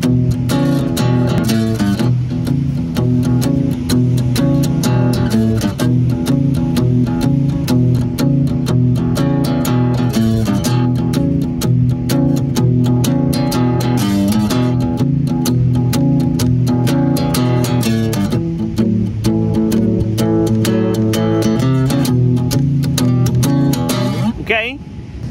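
Steel-string acoustic guitar playing a palm-muted blues shuffle on the two lowest strings, picked at a steady, even pace. It alternates the second and fourth frets against the open bass string and adds short chromatic walk-ups on the bass strings between chord changes.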